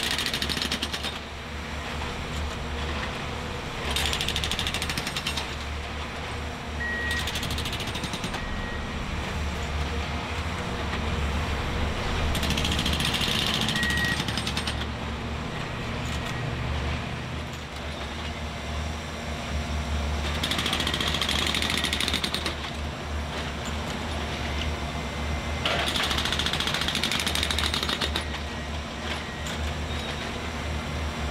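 Nordco production spiker's hydraulic spike hammer driving track spikes into the ties in about six rapid hammering bursts of a second or two each. The machine's engine runs steadily underneath.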